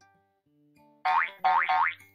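Three quick rising cartoon 'boing' sound effects, starting about a second in, over faint background music.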